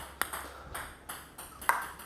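Table tennis ball clicking off the bat and table during a backspin serve: a sharp tick just after the start and another about a second and a half later.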